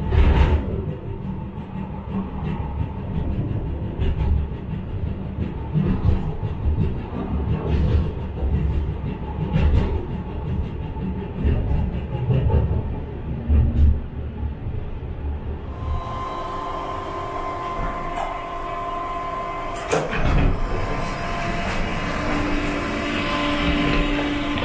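Funicular car running up its rail track, a low uneven rumble with repeated heavy thumps and clacks of the car on the rails. About sixteen seconds in, this gives way to a steadier sound with a few held tones and a single sharp click.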